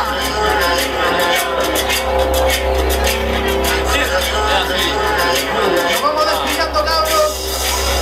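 Live hip-hop song intro through a club PA: a steady deep synth bass with sustained keyboard chords and a light ticking rhythm on top, with voices from the stage or crowd over it.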